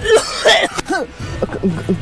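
A man coughing hard, a few rough coughs in the first second, over background music.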